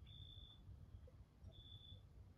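Near silence, with a faint high-pitched chirp sounding twice, about a second and a half apart, from a night insect.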